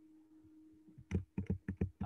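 Computer keyboard typing: a quick run of key clicks in the second half, after a faint steady hum.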